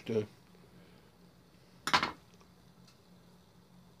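A single sharp clink about halfway through as a screwdriver is set down on the workbench board; otherwise quiet.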